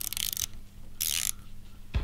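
Socket ratchet clicking in two short bursts, the first about half a second long and a shorter one about a second in, as it is swung back and forth to loosen a motorcycle's gearbox oil drain bolt.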